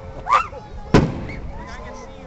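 A single sharp bang from an aerial firework shell bursting about a second in, then fading away.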